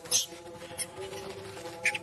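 Short, high-pitched squeaks and cries from a newborn monkey: one near the start, a brief one a little under a second in, and a cluster near the end, over background music with held notes.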